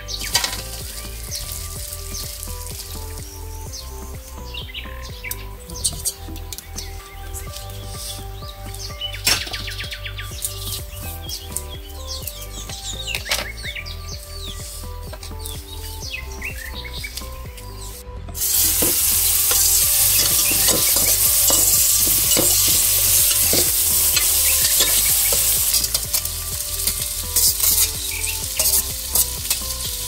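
Vegetables frying in a hot pan, a loud, even sizzle that starts abruptly about two-thirds of the way in. It is most likely boiled kaldırık stems being sautéed. Before it there are scattered light clinks and handling noises over soft background music.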